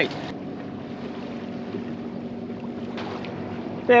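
Sailboat under way: a steady low drone with wind and water noise, the boat's running sound between remarks.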